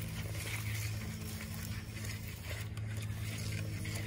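A handheld trigger sprayer spritzing liquid copper fungicide onto a palm trunk: a few faint, short squirts. A steady low hum runs underneath.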